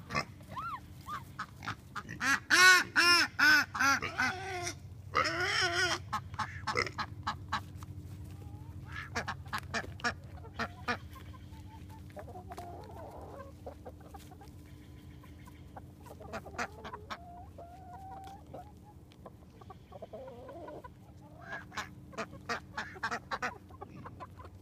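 Chickens clucking and squawking, with a loud rapid run of calls about two seconds in, another burst soon after, and scattered softer clucks through the rest.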